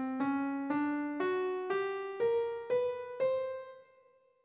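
Single piano notes climbing the Mela Raghupriya scale (scale 3271) over one octave from middle C, about two notes a second: C, C♯, D, F♯, G, A♯, B, C. The top C is left ringing and fades out near the end.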